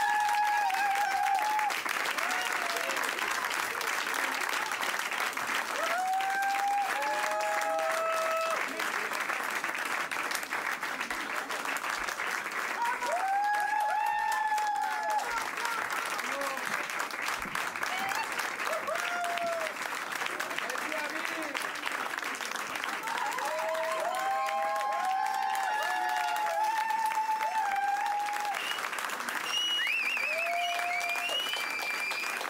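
Concert audience applauding steadily, with voices calling out and cheering over the clapping at several points.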